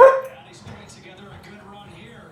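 A dog barks once, a single short bark right at the start, much louder than the television sound underneath.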